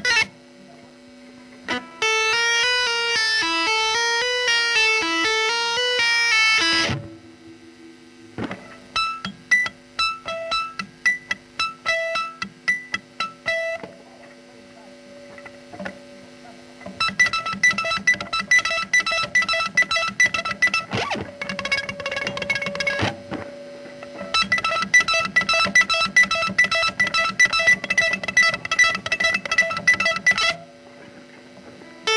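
Electric guitar playing a fast technical exercise: runs of rapidly repeated notes, each lasting a few seconds, separated by short pauses.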